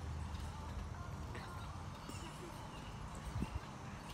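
Faint thuds of two children bouncing on a backyard trampoline, their feet landing on the mat.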